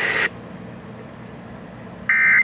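Radio static hiss with a faint steady tone in it, from a weather radio receiver at the end of a relayed warning broadcast, cuts off abruptly about a quarter second in. Only a faint low hum remains after it.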